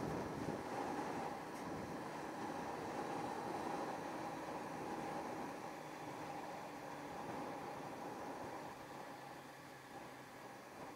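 Yamaha YZF600R Thundercat sport bike under way at a steady cruise: its inline-four engine holding an even note under the rush of wind on the microphone. The sound eases off slightly near the end.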